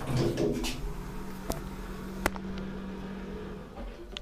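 Kone elevator car and landing doors opening at a floor: the door operator hums steadily for about three seconds, with a couple of light clicks, and stops just before the end as the doors finish opening.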